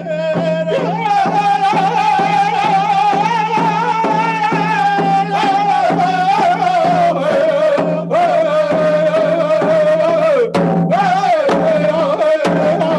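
Two men singing a traditional Nez Perce song in long, wavering held notes, over a steady beat on hand-held frame drums. The melody drops lower about ten seconds in.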